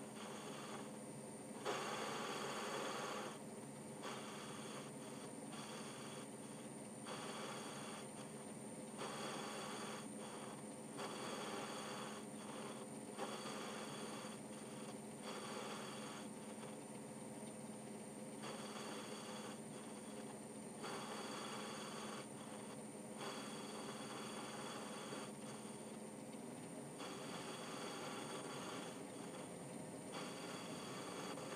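Atlas 10-inch metal lathe running with a steady hum while a lathe tool turns the nose taper on a 3C collet blank. The higher hiss of the cut comes and goes every second or two.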